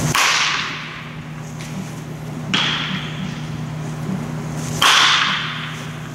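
A baseball bat striking pitched balls three times, a sharp crack each time that rings on briefly in a large hall.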